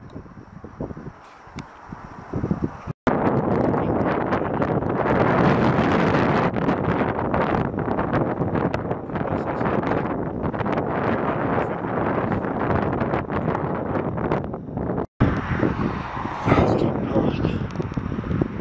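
Wind buffeting the camera's microphone: a loud, steady rush that starts and stops abruptly at two edits. After the second edit comes road traffic noise.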